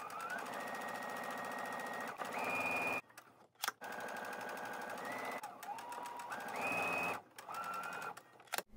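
Domestic computerized sewing machine stitching a quarter-inch seam along pieced fabric strips, its motor whine stepping up and down in pitch as the speed changes. It runs in three stretches, stopping briefly about three seconds in and again near the end.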